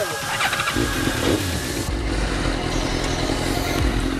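Sport motorcycle engine idling with a steady low rumble.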